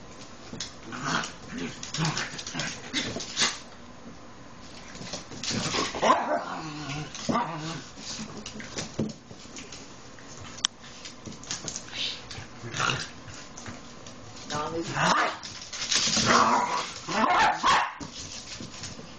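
Two rat terriers, a puppy and an adult, playing and vocalizing in short bursts, loudest about six seconds in and again near the end.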